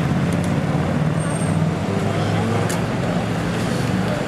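Busy street traffic noise, with the low, steady running of a nearby double-decker bus engine and passers-by talking.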